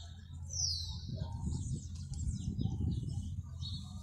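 Small birds chirping: a busy run of short, high calls with one clear falling note about half a second in, over a steady low rumble.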